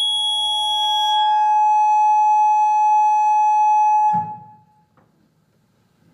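Loud, steady electronic buzzer-like tone, one held pitch, lasting about four seconds before it cuts off and fades away.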